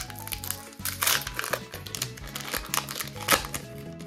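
Foil Pokémon TCG booster pack wrapper crinkling and tearing as it is pulled open by hand, in a run of crackles loudest about a second in and again near the end, with background music underneath.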